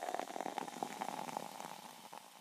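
Carbonated soda fizzing: a dense, fine crackle of tiny bursting bubbles that fades away.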